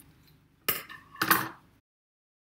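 Two quick clinks of hard objects being handled, about half a second apart, the second with a short ring; the sound then cuts off dead.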